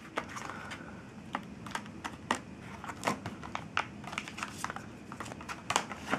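Clear plastic blister packaging being handled and opened, crinkling with a run of irregular sharp crackles and clicks.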